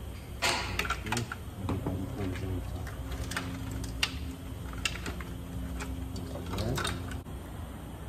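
Scattered clicks and light knocks of parts and wiring being handled and fitted in a car's engine bay. A steady low hum runs in the background for a few seconds in the middle.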